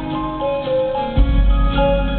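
Live band playing an instrumental passage: held, ringing notes that change pitch, with a deep bass note coming in just past a second in.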